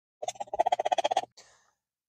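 Instant coffee powder shaken out of a paper packet into a steel canteen cup of hot water: a quick rattling patter lasting about a second.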